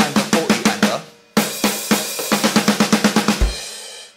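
Electronic drum kit played with sticks: a fast, even run of drum strokes that breaks off after about a second, starts again with a strong hit and runs on for about two more seconds, then ends in a single low thump near the end.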